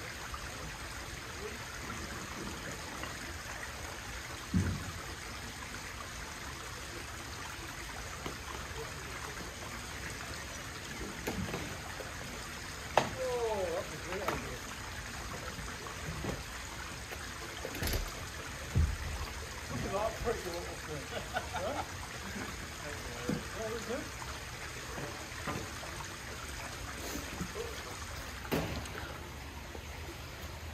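Steady outdoor hiss with faint low voices, and a few dull thuds as a heavy log is rocked and tipped end over end on the ground. The heaviest thud comes a little past the middle.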